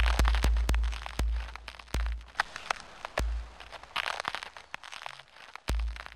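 Sparse, glitchy electronic IDM music: deep bass thumps at uneven intervals under a scatter of sharp clicks and crackles, thinning out and fading toward the end.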